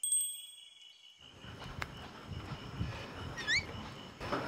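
A single bright chime, struck once at the start and ringing out over about a second. Then quiet room ambience follows, with soft footsteps on stairs and a brief rising high chirp, three times in quick succession, near the end.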